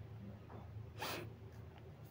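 Quiet room tone with a faint low hum, and a single brief, soft noise burst about a second in.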